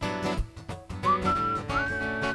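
Acoustic guitar strumming the song's chords, with a whistled melody coming in about a second in, stepping up in pitch and holding a high note.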